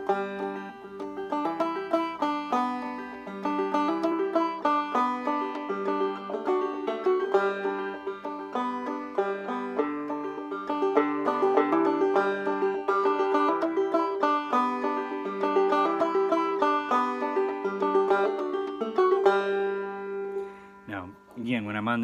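Banjo played clawhammer style, a frailing strum with drop-thumb notes, running through a break in G: G, an E minor hammer-on, repeated, then resolving to D and G. The playing dies away about two seconds before the end.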